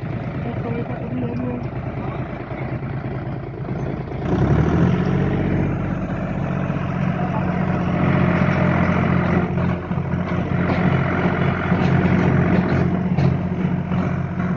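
Tractor engine running. About four seconds in it picks up revs and holds there, driving a tractor-mounted post-hole auger that bores into the soil.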